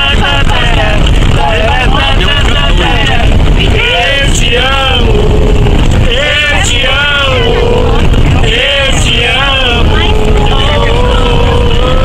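Voices singing loudly, with drawn-out held notes, over the steady low rumble of a moving bus.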